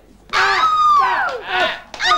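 A high, shrill voice calling out one drawn-out cry that slides downward in pitch, starting about a third of a second in.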